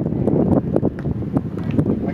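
Wind buffeting the camera's microphone, a steady low rumble, with a few faint knocks.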